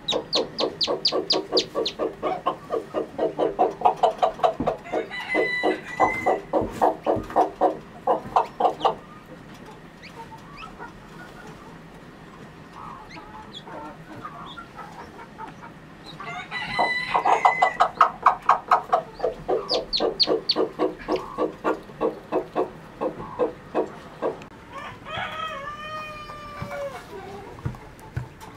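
A hen clucking in two long, fast runs of about six clucks a second, with a few short, higher calls among them. Near the end a rooster crows once, the call falling in pitch.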